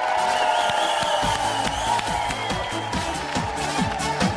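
Upbeat Portuguese pop song from a singer and band: a long held high note over a dance beat, with the bass and kick drum coming in about a second in.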